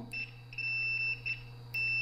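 Fluke 15B digital multimeter's continuity buzzer beeping, a steady high-pitched tone, as the two test probe tips touch: the meter signals continuity. It sounds for about a second, drops out for about half a second, then sounds again near the end.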